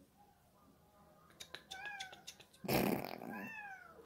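A cat meowing a few times in the second half, drawn-out calls that fall in pitch, the loudest and harshest about three seconds in.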